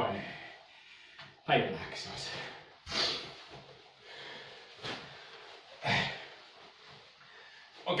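A karateka's sharp, forceful exhalations, four short breaths spread a second or two apart, as he breathes out hard with each strike of the drill.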